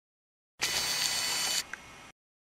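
A short intro sound effect with the logo: about a second of bright, hissy noise that starts about half a second in, then drops suddenly to a faint tail with one small blip before cutting off.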